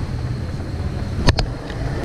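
Steady low rumble of wind buffeting the microphone, with one sharp click about a second and a quarter in.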